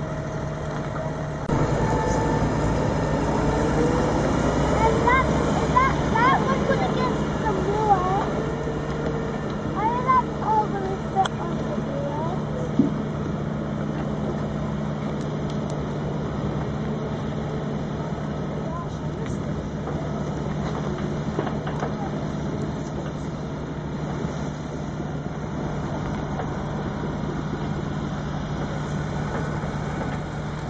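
Heavy diesel machinery, a Fendt tractor hauling logs and a log-loading grab machine, running with a steady drone that gets louder about a second and a half in. Indistinct voices rise and fall over it through the first half.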